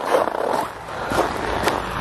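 Footsteps crunching and scraping on packed snow, irregular, with a couple of sharp ticks in the second half.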